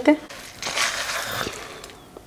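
Dry roasted makhana (fox nuts) and seeds poured from a pan into a stainless-steel grinder jar: a short pour lasting about a second, then fading.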